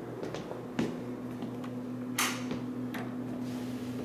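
An interior door being opened: a few light clicks and knocks, with one brief, louder swishing scrape about two seconds in, over a steady low hum.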